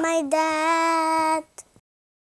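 A child singing a wordless 'do do do' tune: a short falling phrase, then one long held note of about a second that stops abruptly.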